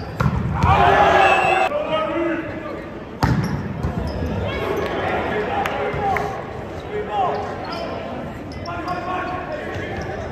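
Volleyballs being hit in a large echoing gymnasium: sharp ball strikes, with the crowd cheering and shouting for a point just after the start, the cheer cut off abruptly before two seconds in. After that, more ball hits and players' shouts through the next rally.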